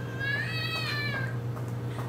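One high-pitched, drawn-out cry that rises a little and then falls, lasting about a second and a half.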